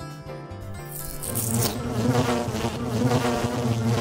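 Theme music for about a second, then a whoosh into a loud, steady buzzing-fly sound effect.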